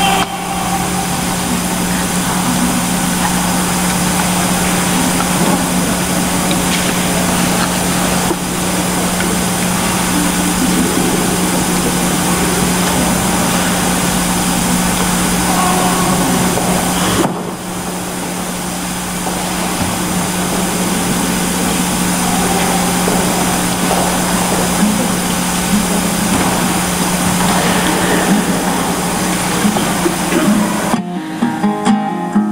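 A loud, steady electrical hum with a constant hiss. It dips briefly about 17 seconds in.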